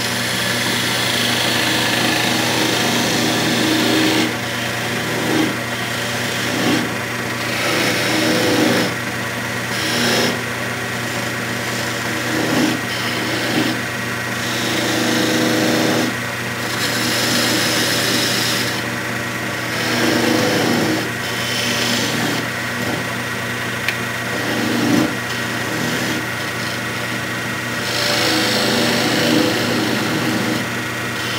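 Wood lathe running with a steady hum while a turning tool cuts into the spinning wooden spoon blank to part it off, the cutting hiss swelling and easing every second or two as the tool is fed in.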